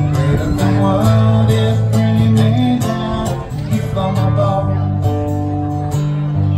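Acoustic guitar strummed in a steady rhythm, ringing chords with a strong bass register: an instrumental break between the verses of a live song, played through stage speakers.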